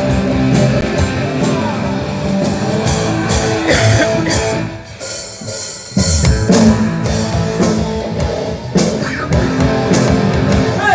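Live rock band playing electric guitars and drum kit. The music drops away for about a second near the middle, then the full band comes back in loudly about six seconds in.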